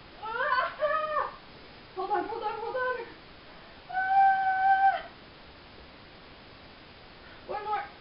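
A series of four high-pitched drawn-out cries, the third held at one steady pitch for about a second, with quiet gaps between them.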